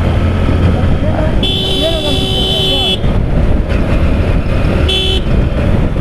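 Motorcycle on the move with steady engine and wind rumble. A vehicle horn sounds one long blast of about a second and a half, then a short toot near the end.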